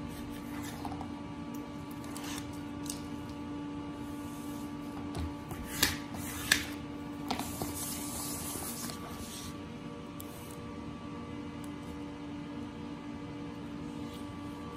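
Handling sounds of a banner being hemmed: a plastic squeegee rubbing along the folded tape hem and the sheet being slid and shifted on a wooden table. There are scattered light clicks, two sharper ones near the middle, then a few seconds of hissy rubbing, over a steady low hum.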